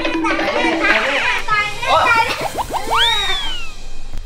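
Cartoon comedy sound effects: a quick run of rising whistle glides about two seconds in, then a slide-whistle swoop up and down near the end, over excited voices and music. They mark a comic tumble to the floor.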